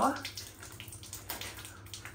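Faint steady hiss of running water in a small tiled room, over a low steady hum, with a couple of light knocks a little past halfway.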